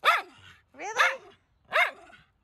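Miniature schnauzer barking, three short sharp barks about a second apart, pestering to have the ball thrown.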